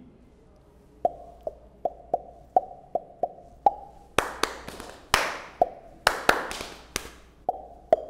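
Body percussion: a run of sharp, evenly spaced pitched clicks, a little over two a second, then louder hand claps mixed in with more of the clicks from about four seconds in.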